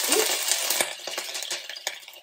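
Garlic in hot oil sizzling sharply as pasta cooking water hits the skillet, the sizzle dying away over about a second and a half, with a few light clicks of a utensil.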